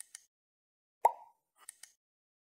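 Subscribe-button animation sound effects: a quick double click at the start, a louder single pop about a second in that dies away fast, then a short run of three or four light clicks near the end.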